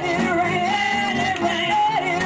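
Church praise team singing with musical accompaniment, a lead voice holding wavering, sliding notes over the group.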